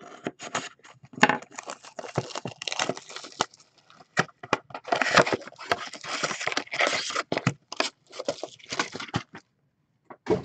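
Trading card pack wrappers being torn open and crinkled by hand, an irregular run of crackling rustles and short sharp tears that dies away near the end.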